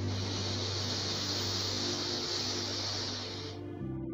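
Soft ambient music holding a sustained low chord. Over it, a long, airy breath sound, a slow exhale, runs for about three and a half seconds, pacing the deep breathing, and then cuts off. The chord shifts just before the end.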